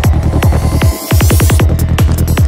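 Dark psytrance at 154 BPM: a kick drum on every beat over a rolling bass. About a second in the low end drops out briefly, then a quick roll of kicks under a rising whoosh leads back into the full beat near the end.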